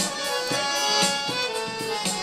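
An electronic keyboard plays a melody of held notes over a steady drum beat, as a song's accompaniment.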